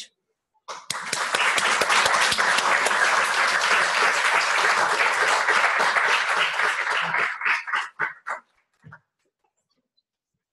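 Audience applauding, starting about a second in and dying away after about eight seconds.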